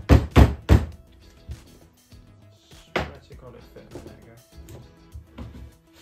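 Hands knocking a plywood panel down into a glued wooden door frame: three heavy thuds in quick succession at the start, a sharper one about three seconds in and a few lighter taps after.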